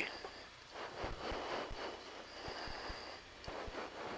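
Faint steady hiss of an open radio or intercom channel between flight-test call-outs, with a few short breathy noise bursts.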